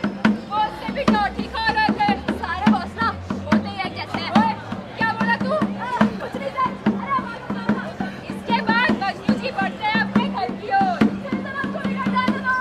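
Live hand drum keeping a steady beat of about two strokes a second under several performers' voices calling out together without clear words.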